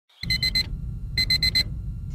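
Digital alarm clock beeping in quick groups of four, one group about every second, over a steady low rumble.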